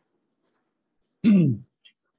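A man clearing his throat once, a little over a second in: a short, loud vocal sound with a falling pitch.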